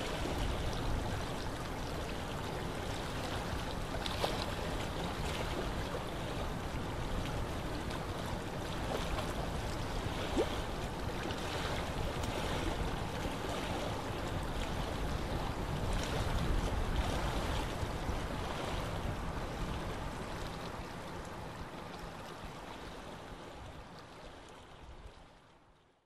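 Steady rushing background noise from an open microphone, with a few faint scattered clicks while code is typed on a keyboard. The noise fades over the last few seconds and cuts off just before the end.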